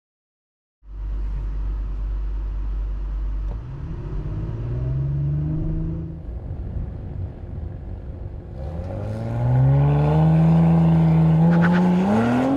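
Audi RS 4 Avant's 2.9-litre twin-turbo V6 with sports exhaust. It starts about a second in with a low, steady running note, then the engine note rises twice as the car accelerates, levelling off each time. The second rise is the louder.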